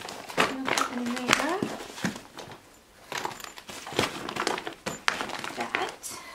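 Clear plastic zippered toiletry pouches crinkling and rustling as they are pushed into a hard-shell suitcase and the fabric packing cubes around them are shifted, a string of short sharp crackles and rustles.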